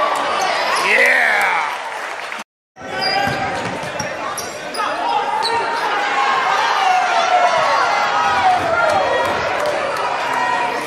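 Basketball game sounds: a ball bouncing on a hardwood gym floor amid players' and spectators' voices. The sound cuts out completely for a moment about two and a half seconds in.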